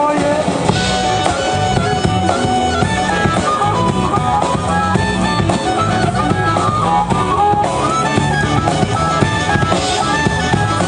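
Live hill-country blues band playing: a drum kit keeps a steady beat under guitar, and a harmonica played through a microphone cupped in the hands carries a bending melody line.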